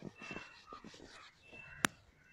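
Faint rubbing of a duster wiping a whiteboard, with a single sharp click just before the end.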